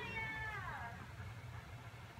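A single meow that starts high and slides down in pitch, lasting under a second.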